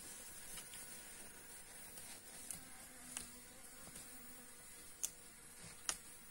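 A honeybee buzzing faintly, with a few light clicks, the two clearest near the end, as a plastic uncapping fork meets the wax comb.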